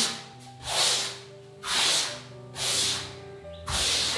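Paintbrush swishing across a wall as limewash paint is brushed on, one stroke about every second, with faint background music underneath.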